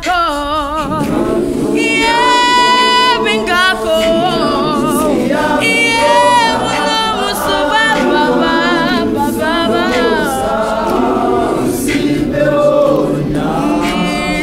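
Large youth gospel choir singing unaccompanied, with a few voices at the microphones standing out over the massed choir, singing with a wavering vibrato.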